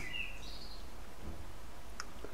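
Quiet background noise with a steady low hum, and two faint, brief high chirps in the first half-second.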